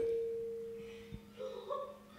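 A single steady ringing tone from the sound system, left as the preacher's amplified voice stops, fading away over about a second and a half; faint murmuring voices follow near the end.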